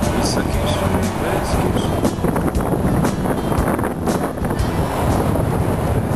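Wind rumbling and buffeting on the microphone of a camera carried on a moving bicycle, loud and steady.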